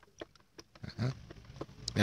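A stick stirring water in a plastic bucket: light sloshing with scattered small knocks of the stick against the bucket, and a brief louder low sound about a second in.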